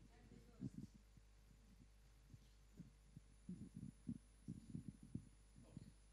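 Near silence: room hum with faint, irregular low thumps, bunched more closely in the second half.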